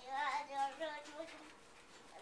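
A toddler's high-pitched wordless vocalizing: a few short calls wavering up and down in pitch, dying away after about a second.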